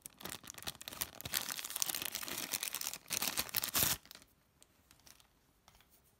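Clear plastic zip-lock bag crinkling as it is handled and opened, a dense crackle for about four seconds, loudest just before it stops, followed by a few faint clicks.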